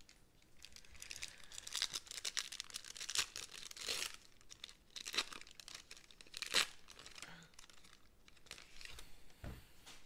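A foil trading-card pack wrapper being torn open and crinkled by gloved hands: a run of crackling, rustling noise with a few sharp rips, the loudest about six and a half seconds in.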